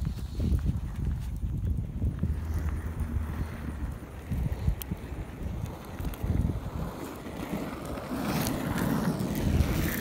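Footsteps on an asphalt track and wind buffeting a hand-held microphone while walking, an uneven low rumble with scattered knocks. The rumble grows denser and hissier in the last couple of seconds.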